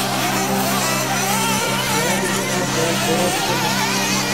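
Small nitro engines of 1/8-scale RC truggies running at high revs, their whine rising and falling as the cars accelerate and brake, with background music underneath.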